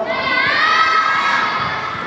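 Several girls' high voices cheering together in one long held shout that rises and then fades away over about two seconds.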